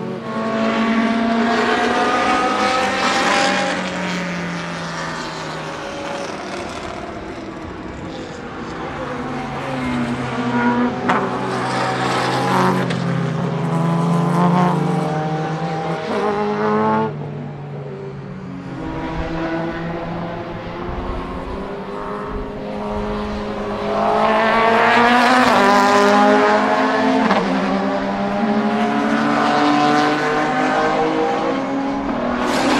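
The Mercedes-Benz CLK DTM (C209)'s naturally aspirated 4.0-litre AMG V8 racing engine running at high revs, its pitch climbing and dropping through gear changes. It grows loud in three swells as the car passes, with a sharp break in the sound about 17 seconds in.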